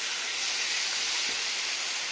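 Oil sizzling steadily in a frying pan as vegetable pieces fry with a freshly added paste of ground gandhal leaves and spices, a constant hiss.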